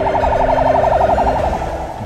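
Police siren in a fast warble, its pitch wobbling up and down many times a second, fading out shortly before the end.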